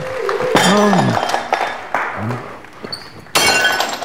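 Glass or crockery smashing on the floor: a sudden loud crash with ringing shards about three seconds in, with an earlier, similar clatter near the start, between a voice's drawn-out calls.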